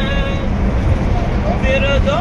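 A boy's voice reciting a naat unaccompanied, a long held note that ends about half a second in and resumes near the end. Under it runs the steady low rumble of the vehicle they are riding in.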